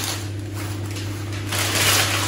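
Sheets of newspaper being crumpled into balls by hand, a dry rustling that swells near the end. A steady low hum runs underneath.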